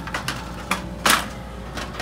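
A few sharp clicks and knocks of plastic toy medical tools being handled and rummaged through in a storage caddy, with one louder clatter about a second in.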